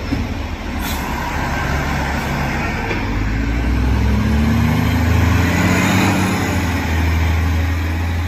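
Iveco side-loader garbage truck's diesel engine pulling away and driving past, its pitch rising as it accelerates, loudest about five seconds in.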